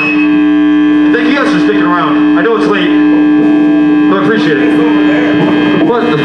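Loud, steady electrical hum from a band's stage amplifiers, a single low tone with many overtones, stopping near the end. Voices talk over it.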